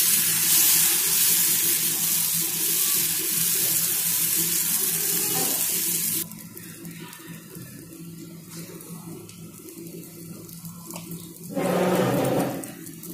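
Adai dosa batter sizzling on a hot pan as it is spread, a loud steady hiss that cuts off abruptly about six seconds in. After that only a low steady hum and a few light clicks remain.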